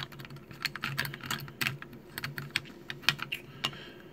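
Quick, irregular light plastic clicks and taps as a plastic control-stick protector is handled and shifted against a DJI Mavic Pro remote controller's sticks and casing.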